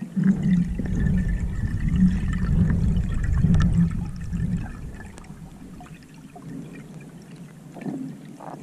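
Water rushing over an underwater camera housing as a freediver fins through the water: a low rumble, loud for the first four seconds or so, then fading to a softer wash with small clicks.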